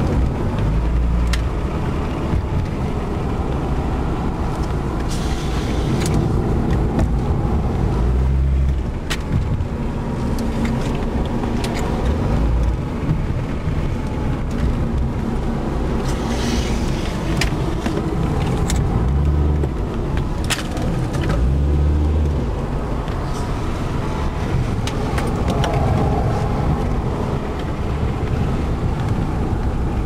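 Car running along a road heard from inside its cabin: a steady low engine and road rumble that swells and eases with speed, with scattered sharp clicks.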